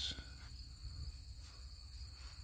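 Insects trilling steadily in the background, a continuous high-pitched drone, with a faint low rumble underneath.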